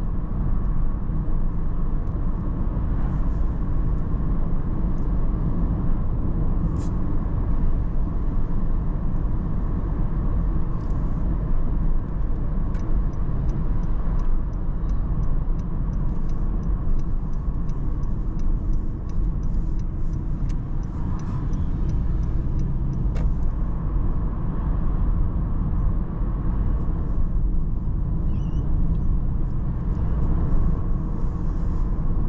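A car driving steadily along a street, heard from inside the cabin: a constant low rumble of road and engine noise.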